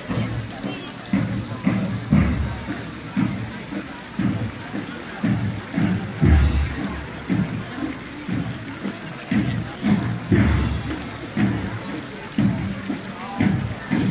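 Voices of a festival crowd chattering close by, with music mixed in and a fountain's water splashing in the background.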